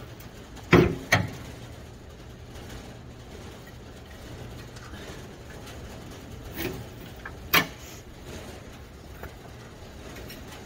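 Shovel working in a worm bed's compost: a few sharp scrapes and knocks, two close together about a second in and another strong one about 7.5 seconds in, over a steady low hum.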